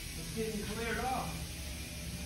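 A faint voice speaking briefly about half a second in, over a steady low hum and hiss of room noise.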